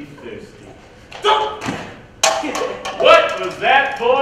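Actors' raised voices on stage in a large hall: a quiet first second, then short loud spoken phrases from about a second in, louder still from about two seconds in.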